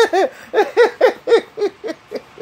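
A man laughing: a high-pitched run of short 'ha' bursts, about four a second, growing fainter.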